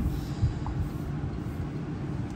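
Low steady rumble of background noise inside a car cabin, with one faint low thump about half a second in.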